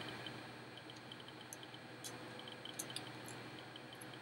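Quiet room hiss with a few faint, scattered ticks from an Allen wrench turning in the small screw that holds the outer shield of an arrow rest, loosening it.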